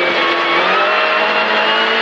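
Rally car engine heard from inside the cabin, held at high revs, its pitch climbing slowly as the car accelerates, over a steady hiss of gravel.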